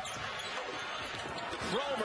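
Steady crowd noise in a basketball arena during live play, with game sounds from the court underneath it.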